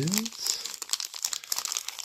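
Thin plastic wrapper bag crinkling and rustling as it is handled and pulled open by hand, a dense run of short, irregular crackles.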